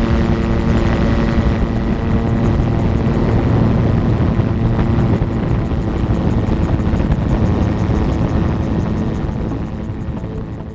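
Magni M16 gyroplane's engine running at full takeoff power through the ground roll and lift-off, heard from the open cockpit with heavy wind noise. The steady engine tones of the first couple of seconds blend into a rushing haze as the aircraft gains speed.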